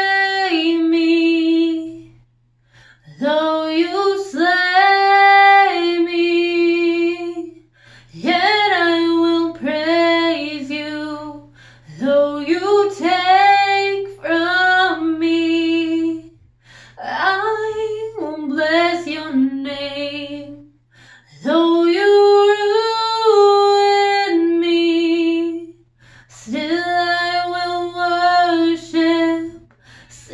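A woman singing a Christian song solo and unaccompanied, in sung phrases a few seconds long with held notes and short pauses for breath between them.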